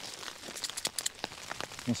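Plastic food packet crinkling as it is handled, a quick run of crackles in the first second or so.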